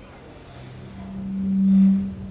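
A low, steady, single-pitched hum that swells over about a second and then fades away.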